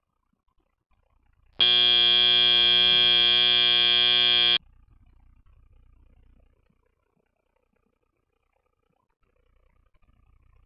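FIRST Robotics Competition field's end-of-match buzzer: one steady, loud blare about three seconds long that starts and stops abruptly, signalling that the match time has run out.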